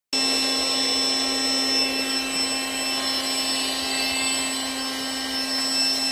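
Small battery-powered mattress-inflator air pump running at a steady pitch, with a fan whine over rushing air. It is drawing air in through a rifle's breech and barrel by a tube to cool the barrel.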